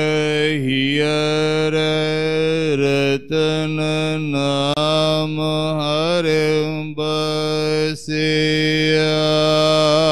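A man chanting Sikh scripture (Gurbani) in long, drawn-out held notes, the granthi's recitation of the Hukamnama, with brief breaks between phrases.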